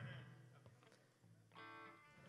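Near silence on a live stage, broken about one and a half seconds in by a single faint electric guitar note through an amplifier, lasting about half a second.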